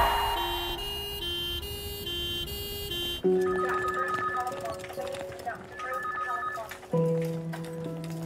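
Film soundtrack: for about three seconds, a two-note electronic tone alternates rapidly, about every 0.4 s. It then gives way abruptly to a slow background score of held notes with a melody above.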